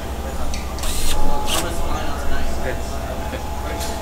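Factory-floor machinery: a steady hum with a few constant tones, and a short hiss of air about a second in, from a pneumatic filling station for liquid-cooler radiators. Voices are faint in the background.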